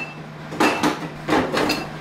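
Groceries being set into an open refrigerator: two short rustling, scraping bursts as cartons and bottles are pushed onto the shelves.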